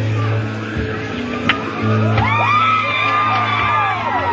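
Live band music in a large hall over a held bass note. From about two seconds in, the audience whoops and screams over it, many voices at once.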